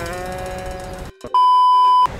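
A man's voice trailing off on a drawn-out word, then a moment of dead silence and a loud, steady high-pitched beep lasting about two-thirds of a second: an edited-in censor bleep over the phone conversation.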